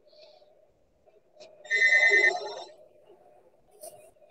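Telephone ringing: one electronic ring about two seconds in, a steady high tone lasting about a second.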